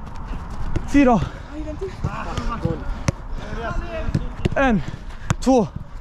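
Footballs being kicked between players in a passing drill, short sharp knocks. Loud shouted calls with a falling pitch come about a second in and twice near the end, with quieter voices between them.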